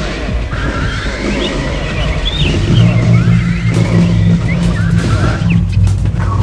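Experimental electronic noise music: wavering high pitch glides over a dense rumbling bed, with a low steady drone coming in about halfway through.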